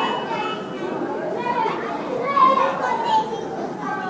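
A crowd of children talking and calling out at once, a steady babble of overlapping young voices, with one voice rising above the rest a little past halfway.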